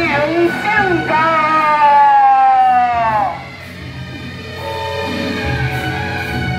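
Beiguan procession music led by a suona (Chinese double-reed horn), holding one long note that slides down in pitch between about one and three seconds in, after which the music goes quieter.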